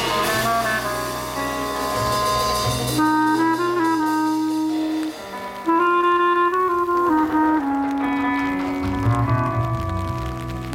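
Small jazz band playing live: a trumpet plays melodic phrases, with a short break about five seconds in, over double bass and drum-kit cymbals.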